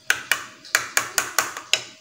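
Metal spoon clinking against a baby bowl while stirring and spreading thick porridge, about seven quick clinks in under two seconds.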